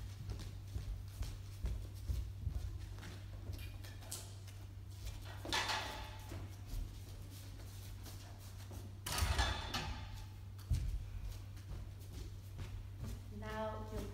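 Freestanding metal ballet barres being picked up and moved across a studio floor: two bursts of scraping about five and nine seconds in, and scattered knocks of the barre feet, one sharp knock near the end of the second, all over a steady low hum.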